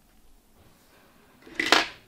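Nylon beading thread drawn quickly through a ring of glass seed beads: a single brief zipping swish about a second and a half in, over faint handling noise.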